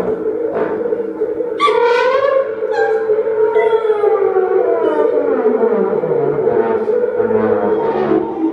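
Free-improvised ensemble music: a steady held drone under a wavering high tone about two seconds in, then a long, slow downward pitch slide lasting several seconds, with a siren-like quality.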